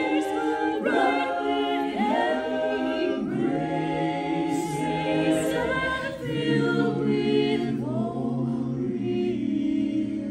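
Mixed a cappella choir of seven voices, women and men, singing in close harmony, with held chords that shift every second or two.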